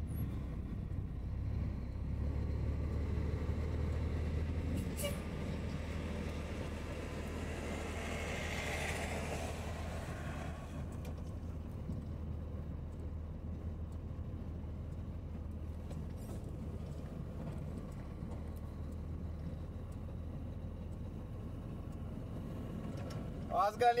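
Truck engine running steadily at low speed in the cab, with road and rattle noise from the rough dirt road. An oncoming school bus passes close by partway through, adding a swell of engine and tyre noise.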